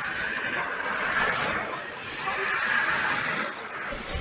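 A man's voice coming through a video call, garbled and buried in hiss so that the words cannot be made out, swelling and fading in strength.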